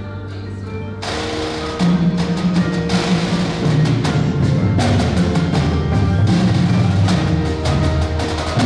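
High school marching band playing: a held low chord, then about a second in the drums and mallet percussion enter with sharp strikes, and from about two seconds in the full band plays louder with strong low brass.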